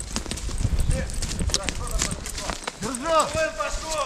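Footsteps of a person walking over the forest floor, with soft thuds and short sharp cracks and rustles underfoot. A man's voice calls out about three seconds in.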